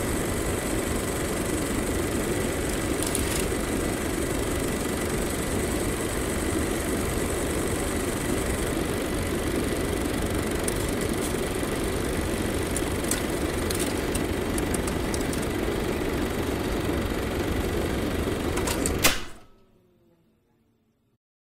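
Film projector running steadily, with a few faint crackling clicks, stopping with a click near the end.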